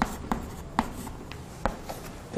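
Chalk writing on a chalkboard: faint scratching strokes broken by a few sharp taps as the chalk strikes the board.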